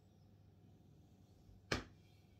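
Quiet room with a single sharp click or knock about one and a half seconds in.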